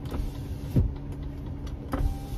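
A car's electric windows being lowered, the window motor running over a steady in-car hum, with one low thump just under a second in.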